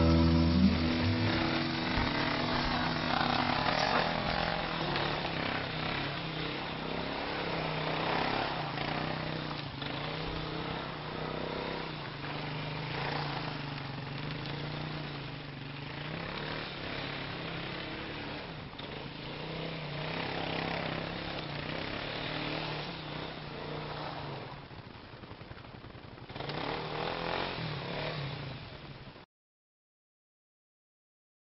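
Kymco KXR 250 quad's single-cylinder four-stroke engine running and revving up and down as it rides across snow, slowly growing fainter. It is louder again near the end, then cuts off abruptly.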